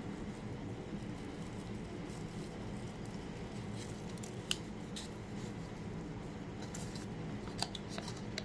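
A paper packet of instant chicken broth crinkling in the hand as its powder is shaken out, with a few sharp ticks, over a steady low hum.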